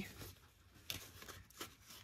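Faint rustling of patterned cardstock being folded and creased by hand along a score line, with two small crackles a little under a second apart.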